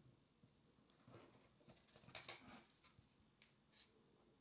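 Near silence with faint scraping and light clicks from a smartphone battery being pressed into its snug-fitting compartment, the strongest scrape about two seconds in and a few small ticks near the end.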